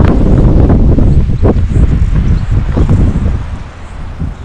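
Wind buffeting the microphone: loud, gusting low rumble that eases near the end.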